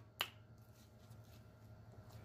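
A single short, sharp click about a quarter of a second in, then near silence with a faint low hum.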